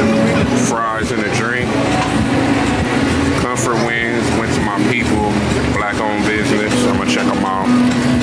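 Steady low hum of a food truck's motor running, with people's voices talking over it.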